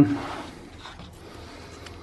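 Low, steady background hiss, room tone, after the last word of a man's speech dies away at the start.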